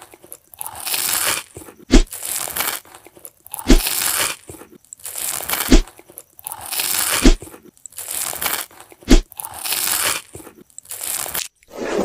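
Crunchy cutting sound effects for a knife slicing away growths: a gritty scraping crunch of about a second, then a sharp knock. The pattern repeats about every two seconds, with five knocks in all.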